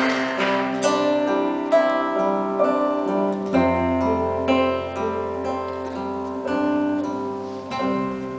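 Acoustic guitar playing slow, ringing chords in a live song's instrumental close, with a held low note joining about halfway through and the playing easing off near the end.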